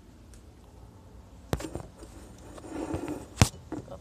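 Handling noise of a phone camera being moved and set down: a sharp knock about a second and a half in, some rustling, then a louder knock shortly before the end.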